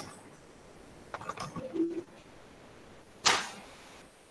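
Low call audio with a brief faint murmur of a voice in the middle, then one short, sudden noisy whoosh about three seconds in that fades quickly.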